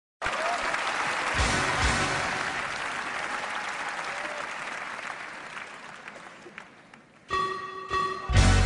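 Audience applause in a large hall, slowly fading away. Near the end a held musical chord starts: the opening of the band's song.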